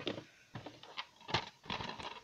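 Plastic DVD cases clicking and knocking as one is taken off a stack: several light clicks, the loudest about a second and a third in.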